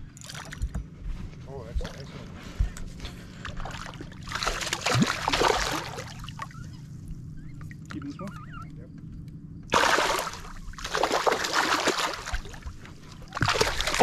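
Hooked smallmouth bass thrashing and splashing at the water's surface beside the boat while being reeled in, in two bouts of splashing, about four seconds in and again from about ten seconds in. A steady low hum runs underneath.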